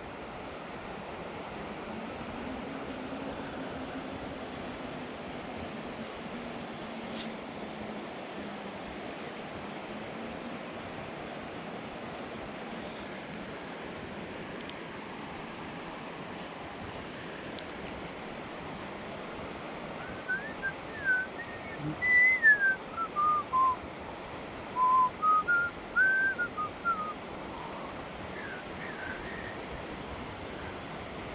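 Steady rush of flowing river water, and about twenty seconds in a person whistles a short tune for several seconds, the notes stepping down and back up in pitch.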